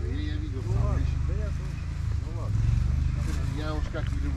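Several people talking indistinctly, over a steady low rumble.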